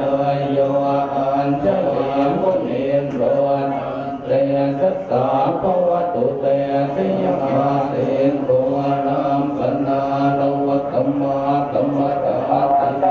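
Buddhist monks chanting a blessing together in a low, steady, near-monotone drone that continues without a break.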